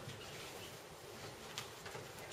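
Faint room tone: a low steady hum, with a couple of faint clicks near the end.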